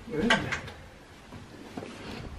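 A man's short, surprised 'oj', then quiet room sound with a few faint clicks.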